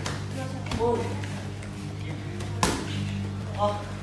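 A single sharp smack of a sparring blow landing, a little past halfway, between short shouted "oh" calls. A steady low hum runs underneath.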